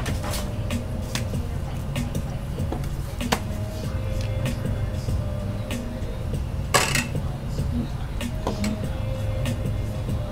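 Small clicks and knocks of caps being pulled off ink bottles and the caps and bottles being set down on a table, with a sharper clack about three seconds in and the loudest one near seven seconds, over a steady low hum.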